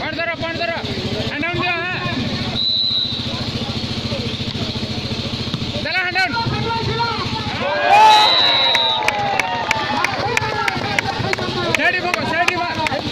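Referee's whistle blown twice during a volleyball rally: a short blast about two and a half seconds in and a longer one about eight seconds in, over spectators shouting and calling out. A run of sharp clicks comes near the end.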